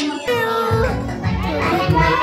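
Background music with a sung melody and a steady beat, mixed with children's voices.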